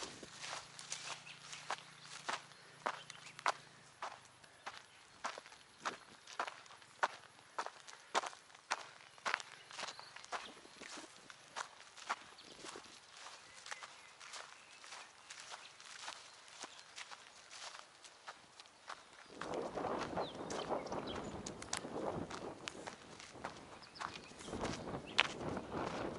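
Footsteps walking along a dirt-and-grass path at about two steps a second. Near the end the steps give way to a louder, steady rushing noise.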